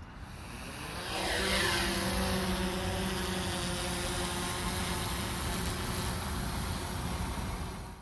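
DJI Mavic 3 Classic drone's propellers spinning up for take-off, then a steady multi-tone whine as it flies. The sound swells about a second in and fades out near the end.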